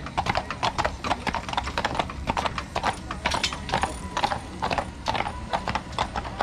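Hooves of a pair of big draft horses clip-clopping on an asphalt road as they pull a carriage past, a quick, uneven clatter of several hoof strikes a second.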